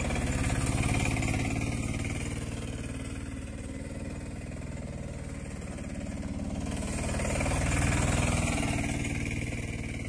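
Three-wheeled auto-rickshaw engine running as the vehicle drives in circles over mung bean plants spread on the ground to thresh them. It swells as it passes close about a second in and again about eight seconds in.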